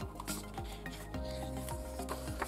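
Glossy pages of an album photobook being rubbed and turned by hand, with paper sliding and rustling, over soft background music with held tones.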